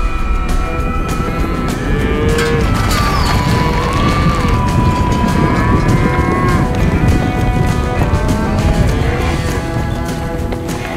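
Cattle mooing, several drawn-out calls that rise and fall in pitch, over background music.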